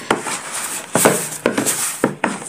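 Hands kneading soft scone dough in a plastic basin, in irregular strokes, with louder ones about a second in and again near the end.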